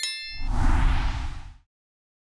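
Motion-graphics sound effects: a bright bell-like ding rings out at the start, then a whoosh swells and fades over about a second and a half.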